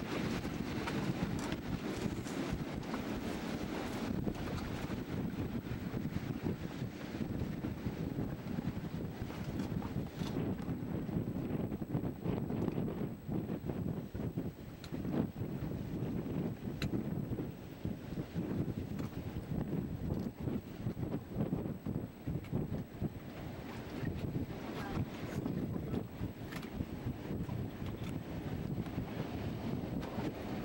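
Wind buffeting a camcorder microphone on a boat out on choppy sea, a steady fluttering rumble with water noise underneath.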